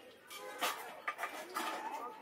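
Faint voices, soft and wavering, with a couple of light clicks about half a second and a second in.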